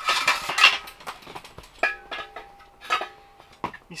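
Metal clattering and clinking as a small propane heater and its one-pound propane cylinder are handled and fitted together, with a dense burst of knocks at the start and single knocks later. A metal part rings for about a second and a half after the knock at two seconds in.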